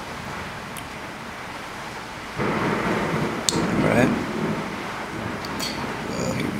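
Rumbling rush of handling noise on a handheld camera's microphone, starting a little over two seconds in, with a sharp click and a brief mumble in the middle. Before it there is a steady low hiss.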